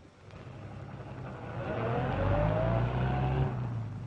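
A 1930s taxicab's engine running, growing louder and rising in pitch as the cab accelerates, then cutting off abruptly near the end.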